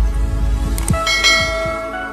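Channel-intro sound effects: deep falling swoops over a low rumble, then about a second in a bell-like chime that rings on and slowly fades.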